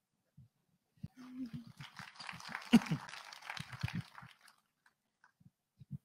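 Faint audience laughter and murmuring from a seated crowd, starting about a second in and dying away after about four seconds.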